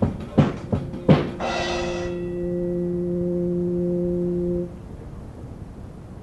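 A few sharp knocks, then a single sustained musical note with a bright attack. The note holds level for about three seconds and then cuts off suddenly, leaving a low hiss.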